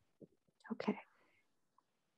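A person's short whisper, under a second long and breathy, with a faint click just before it.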